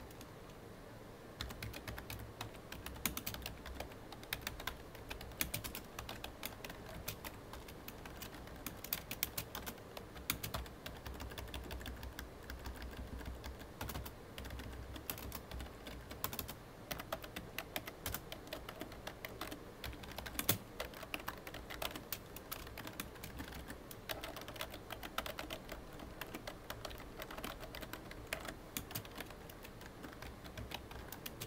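Typing on a computer keyboard: a steady, fast run of irregular key clicks that starts about a second in.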